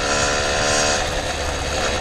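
Two-stroke motorized-bicycle engine running steadily while riding, its note holding an even pitch.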